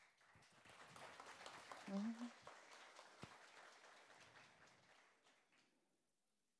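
Faint audience applause that swells over the first couple of seconds, then tapers away and dies out near the end. A woman says a brief "thank you" about two seconds in.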